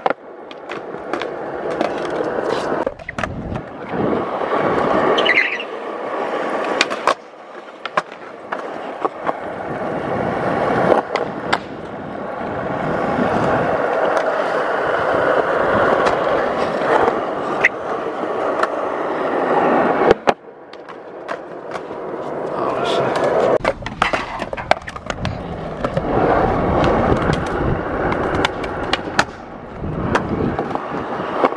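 Skateboard wheels rolling on a concrete skatepark surface, rising and falling as the rider pushes and coasts, broken by sharp clacks of the board hitting the ground during tricks. The rolling cuts off suddenly about seven seconds in and again about twenty seconds in, then builds back up.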